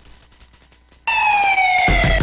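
A police siren, as a sound effect, comes in suddenly about a second in: one loud wailing tone that slides slowly downward in pitch. A low thump sounds just at the end.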